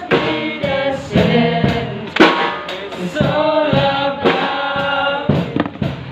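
Men singing a gospel worship song into handheld microphones, the sung lines rising and falling without a break.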